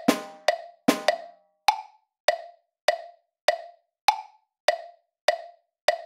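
Synthesised percussion playback of a rhythm exercise. In the first second a few fuller drum strokes sound the closing half-note triplet over the clicks. After that come only steady wood-block metronome clicks, about 100 a minute, with a slightly higher click at the start of each four-beat bar.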